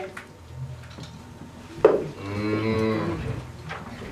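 One long, low, drawn-out call that starts sharply about two seconds in and holds for nearly two seconds, sinking slightly in pitch, like a voice or an animal lowing.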